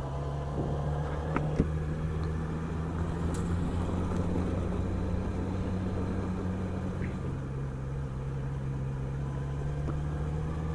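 Yamaha XJ6's inline-four engine running at a steady cruising speed while the motorcycle rides a dirt road, its steady drone blended with road noise.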